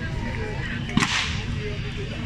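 A single sharp crack about a second in, with a short ringing tail. It is the starter's pistol firing the start signal for a fire-sport team's attack.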